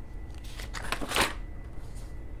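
A paper page turned over in a ring binder: a short rustle of paper, loudest just after a second in.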